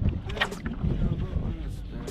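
Wind rumbling on the microphone and water around a bass boat on open water, with one short, sharp high-pitched sound about half a second in.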